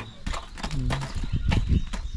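Metal kebab skewers and tongs clinking against a charcoal mangal as skewers are handled and set down, a quick irregular series of sharp metallic clicks.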